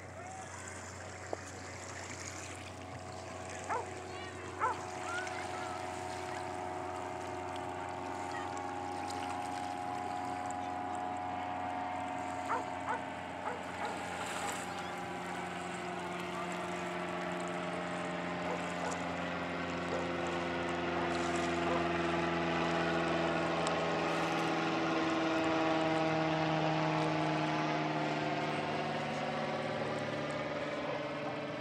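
Aircraft flying overhead, its engine a steady multi-tone drone that slowly grows louder and drops a little in pitch as it passes, peaking near the end.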